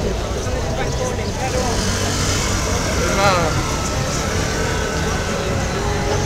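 Crowd of people talking at once, with overlapping indistinct voices over a steady low rumble of city traffic. One voice rises briefly above the rest about three seconds in.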